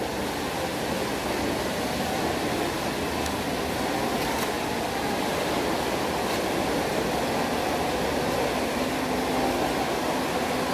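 Steady, even background noise of a mall food court, a hiss like air conditioning that holds at one level throughout.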